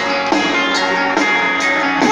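Live rock band playing an instrumental passage: guitars ringing out sustained chords that change every half second or so over a steady beat, heard loud over the concert PA.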